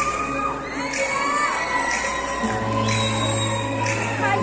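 A theatre audience cheering, with high-pitched shouts rising and falling above the crowd, over stage music with sustained bass notes.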